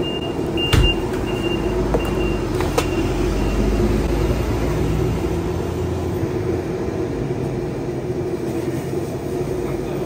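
Steady roar of a restaurant gas wok burner heating an empty wok, with a steady hum under it and a couple of light metallic clicks about one and three seconds in.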